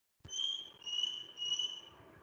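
A participant's microphone on a video call cutting in with a click, bringing room noise and three high, steady tones about half a second apart, each falling slightly in pitch.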